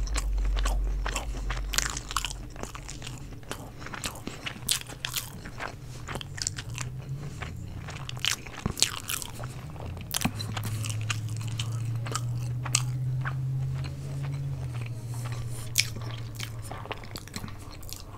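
Close-miked chewing and biting of a mouthful of chicken fajitas and rice: many short, irregular clicks over a low steady hum.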